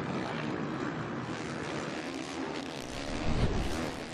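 Motocross race bikes' engines on track, a steady mix of revving drone and rasp from several bikes, with a low rumble about three seconds in.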